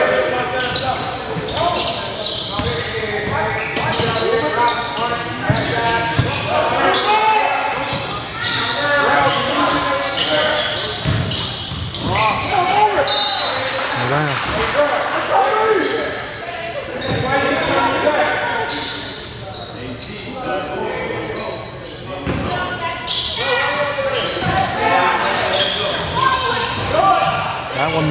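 A basketball being dribbled on a hardwood gym floor, with repeated bounces, under voices from the court and stands, all echoing in a large gymnasium.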